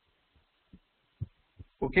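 A near-silent pause with three faint, short, soft taps of a computer mouse being clicked, then a man says "okay" near the end.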